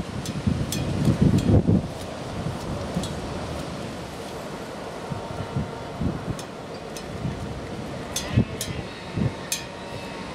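Wind buffeting the microphone in gusts, strongest in the first two seconds, over the faint steady drone of an approaching Class 66 diesel locomotive hauling a loaded freight train. A few sharp clicks come near the end.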